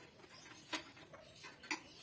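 Light clicks and taps from hands handling the wiring and small metal parts of an opened gas water heater, with two sharper clicks about a second apart.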